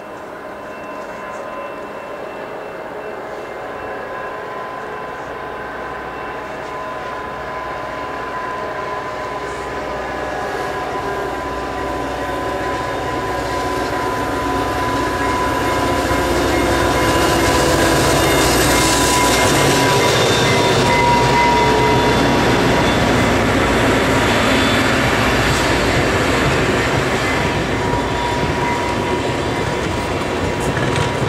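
VIA Rail EMD F40PH-2 diesel locomotive approaching and passing, its engine growing steadily louder for about the first fifteen seconds, with a steady high tone throughout. Stainless-steel Budd coaches then roll past with wheel clatter on the rails.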